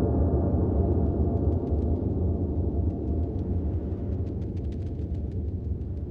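Deep rumbling drone of film sound design, the decaying tail of a low gong-like boom, easing off slightly, with faint scattered crackles over it.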